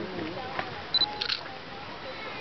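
A digital camera's short, high focus-confirm beep about a second in, followed at once by a few shutter clicks, over background voices.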